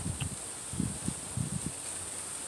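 Steady high-pitched insect chirring in the background, with a few soft low bumps scattered through.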